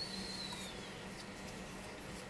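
Quiet kitchen room tone with a steady low hum and one faint high-pitched squeak at the start that rises slightly, then falls away over about a second.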